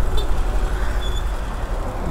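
Small single-cylinder motorcycle engine running at low speed in slow traffic, a steady low rumble with road and wind noise; two faint short high beeps are heard, near the start and about a second in.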